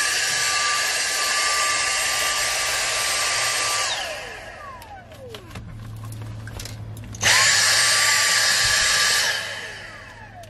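Dyson cordless handheld vacuum running loud and steady, a rush of air with a high whine, then switched off about four seconds in, its motor winding down in a falling whine. After a few handling clicks it starts again abruptly a little after seven seconds, runs for about two seconds, and winds down again near the end.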